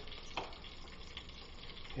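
Filet steak sizzling faintly in butter in a lidded frying pan, with a single knife tap on a cutting board about half a second in.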